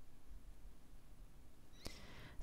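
Quiet room tone with a faint low hum, and a light click near the end as a small photo print is handled and set down on the paper layout.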